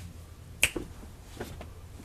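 Finger snapping: one sharp snap a little over half a second in, followed by a few fainter snaps.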